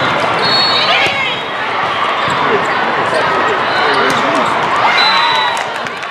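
Live volleyball sound in a large, echoing hall with many courts: balls being struck and bouncing among overlapping players' calls and crowd chatter. The sound fades out at the end.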